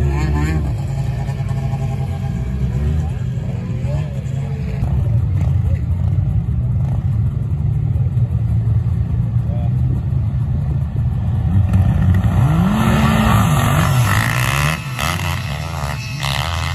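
Motorcycle engine revving as the bike spins on the ice. After a cut, several snowmobile engines run and then rise in pitch as they launch from the start line; this is the loudest stretch, about three-quarters of the way in. Voices are heard throughout.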